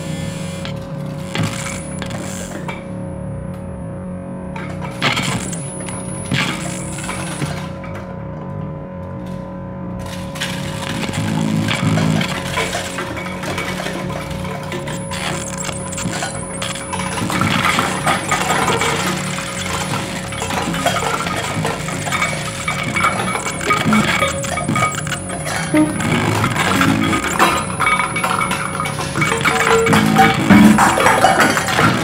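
Free-improvised experimental music with a steady held tone under it and a scatter of small metallic clinks and clicks. The clinks grow denser and louder from about ten seconds in. The instruments are prepared piano, percussed packaging, guitar and electronics.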